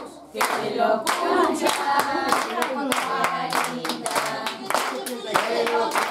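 A group of people clapping in rhythm while singing together.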